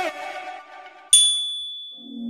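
A single high chime about a second in that rings out and fades, the timer signal for switching to the next exercise. Before it, the tail of an electronic dance track fades out.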